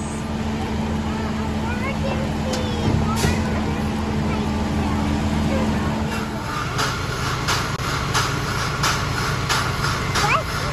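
Heavy diesel engine of the construction machines at a water-main repair, running steadily. About six seconds in, the sound changes to a different steady machine hum with sharp knocks repeating about twice a second.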